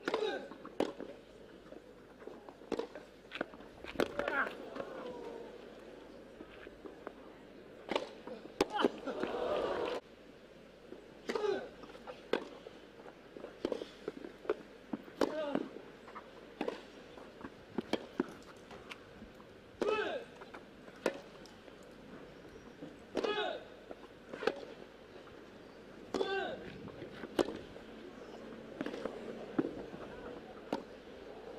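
Tennis rallies on a grass court: sharp pops of the ball off the rackets, repeating every second or so, several of them with a player's short, loud grunt on the shot.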